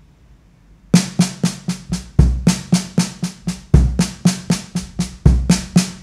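Drum kit: snare drum struck with sticks in a slow, even sextuplet lick, five snare strokes (right, left, right, left, left) followed by a bass drum kick, the cycle repeating about every second and a half. The playing starts about a second in.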